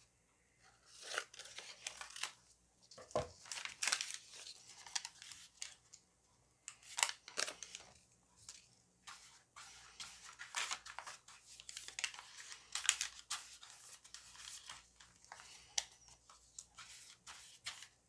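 Paper being handled and torn by hand, in short irregular ripping and rustling bursts, then a flat glue brush scratching back and forth over paper as collage pieces are pasted down.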